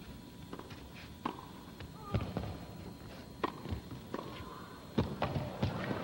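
Tennis rally on an indoor court: a string of sharp pops from rackets striking the ball and the ball bouncing, a hit every half-second to second.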